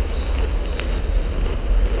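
Wind buffeting the camera's microphone: a steady low rumble with a faint hiss over it.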